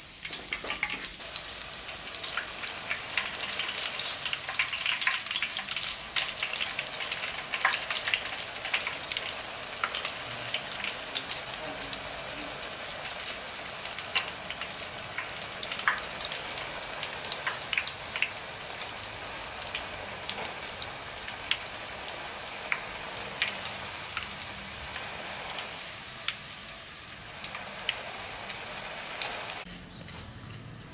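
Hot cooking oil in a wok sizzling and crackling, with many sharp pops, busiest in the first ten seconds or so and steadier after. Minced garlic is deep-frying in the oil in a mesh strainer.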